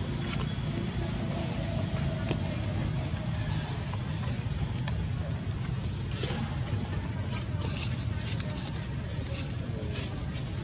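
Outdoor background sound: a steady low rumble like a distant motor, with indistinct voices and a few brief high sounds in the second half.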